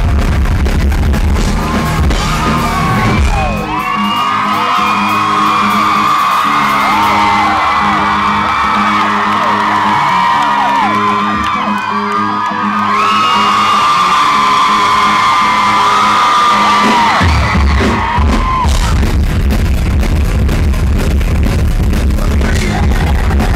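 Live rock band playing loudly in a club. About three seconds in, the drums and bass drop away, leaving sustained, bending guitar lines over crowd whoops and screams. The full band comes back in about seventeen seconds in.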